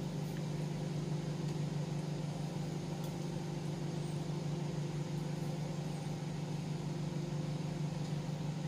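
Steady low electrical hum with a slight buzz, unchanging throughout.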